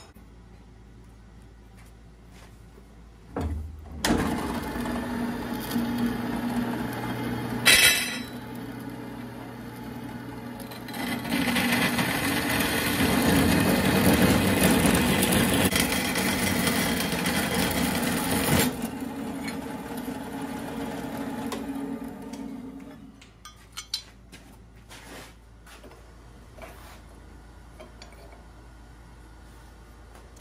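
Bandsaw motor starting about three seconds in and running, its blade cutting through quarter-inch steel angle, loudest for several seconds in the middle. The saw then switches off and coasts down, followed by a few light clicks and knocks.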